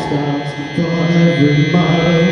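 Live rock band dropping to a quieter passage: the drum beat stops and electric guitar and bass hold ringing, sustained notes, moving to a new chord about a second in.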